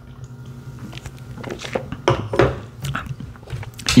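Close-miked gulping as a man drinks beer from an aluminium can: a run of swallows over a steady low hum.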